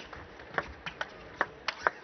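Table tennis rally: the ball strikes rackets and table in a string of sharp, hollow knocks, about six in all, the last two coming close together near the end.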